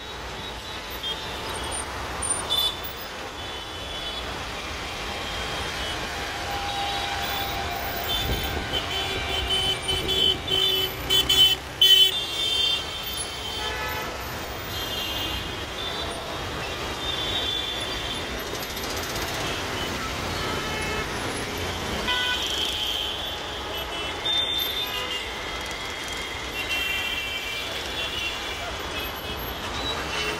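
Road traffic in a jam, with car horns honking again and again over a steady background of engines and road noise. The honking is loudest around ten to twelve seconds in.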